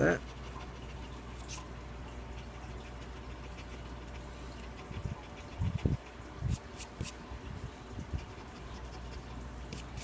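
A coin scraping the scratch-off coating from a lottery ticket, in several short strokes with a few sharp clicks about halfway through, over a steady low hum.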